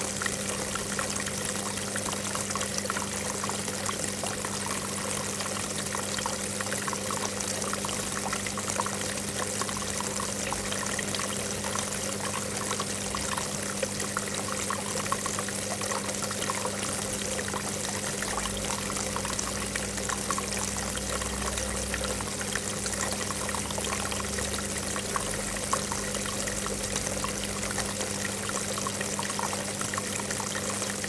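Water from a tiered garden cascade fountain pouring and trickling steadily over its lips into the pools below, with a low steady hum underneath.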